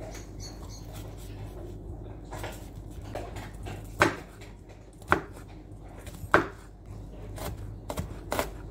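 Chef's knife slicing a garlic clove on a plastic chopping board: a few slow, separate knocks of the blade meeting the board, three of them sharp and loud in the second half.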